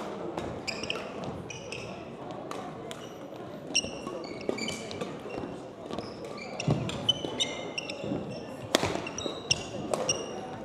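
A badminton doubles rally in a hall: shoes squeak in frequent short, high chirps on the court floor, and rackets strike the shuttlecock in sharp cracks several times, loudest near the end.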